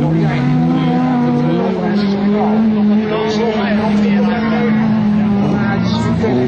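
Several racing touring cars' engines running hard on a dirt track, more than one engine note heard at once. The notes slide down in pitch early on, then hold steady at high revs.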